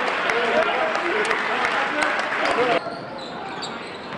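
Basketball game in a gym: shouting voices from the crowd and players over the hall's din, with sharp clicks of the ball bouncing. The sound drops suddenly to a quieter court about three-quarters of the way through.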